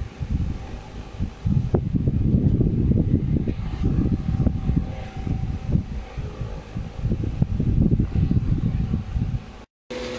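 Air buffeting the phone's microphone: a rough low rumble in irregular gusts, with a faint steady hum beneath, stopping abruptly near the end.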